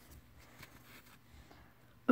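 Near silence: faint room tone with a few soft, barely audible ticks.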